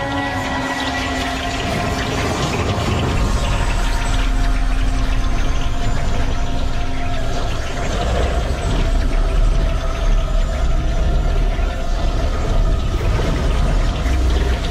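Magical vortex sound effect: a loud, dense rushing like a whirlwind over a deep rumble that builds about three seconds in, with held tones of the score underneath.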